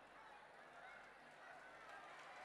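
Near silence: a faint background hush with a few faint, brief pitched sounds.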